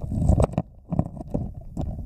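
Underwater recording of a gloved hand fanning creek-bed gravel: irregular muffled knocks and clicks of stones and the hand moving against the camera, over a low water rumble, with a short lull a little after half a second.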